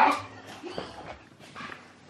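A small dog whimpering faintly in short, scattered sounds.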